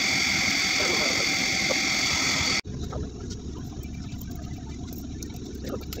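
A steady hum with a high whine, like a small electric motor running, cuts off abruptly about two and a half seconds in. After it there is quieter room sound with a few sharp, light clicks.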